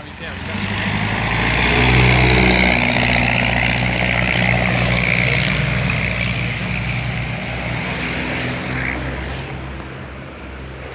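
Aircraft engine sound from a low-flying aircraft passing by, swelling to its loudest about two seconds in and then slowly fading.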